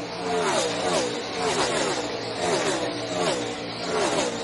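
NASCAR Cup stock cars' V8 engines passing at full racing speed one after another, about two a second, the pitch of each dropping sharply as it goes by.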